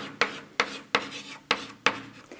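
Chalk writing on a blackboard: a quick run of sharp taps, each followed by a short scratch, about three strokes a second as the symbols are written.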